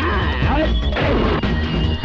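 A loud crash of an object being smashed, with film background music playing.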